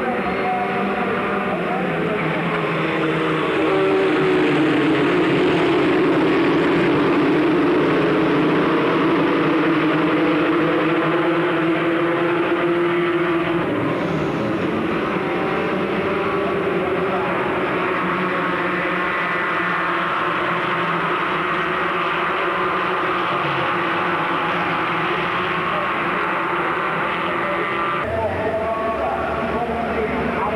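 A pack of Formula Ford 1600 racing cars, their four-cylinder Ford Kent engines at high revs, passing in a group, many engine notes overlapping and rising and falling in pitch. The sound changes abruptly about halfway through, at a cut to another stretch of track.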